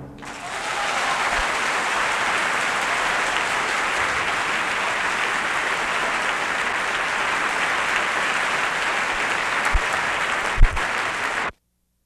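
Concert audience applauding as the orchestra's final chord dies away: steady applause with a couple of low thumps near the end, then cut off abruptly about eleven and a half seconds in.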